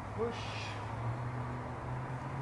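A man calls "push" once, with a steady low hum beneath it.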